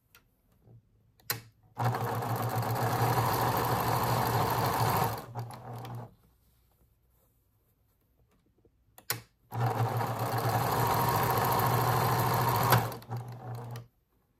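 Electric domestic sewing machine stitching fabric in two steady runs of about three and a half seconds each, with a sharp click just before each run. Small cotton quilting squares are being fed through.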